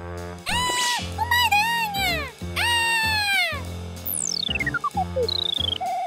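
Comic sound effects over light background music: three wavering, meow-like calls, then a long falling whistle and a short high tone near the end.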